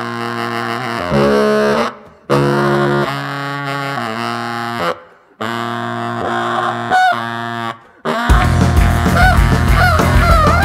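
Jazz-rock band music: long held chords from alto saxophone and electric bass, played in blocks broken by abrupt silent stops every two to three seconds. A little after eight seconds the full band comes in with drums, and the saxophone plays a wailing line that bends upward.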